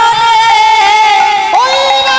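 A woman singing a Bengali kirtan, holding one long note with musical accompaniment; about one and a half seconds in, the note steps up in pitch.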